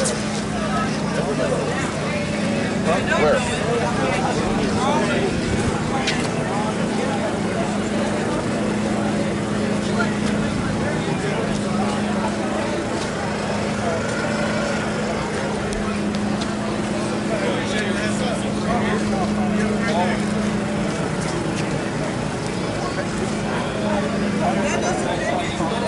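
Indistinct voices of people talking around the microphone, over a steady low hum.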